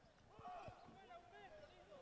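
Near silence, with faint distant voices and a couple of soft thumps about half a second in.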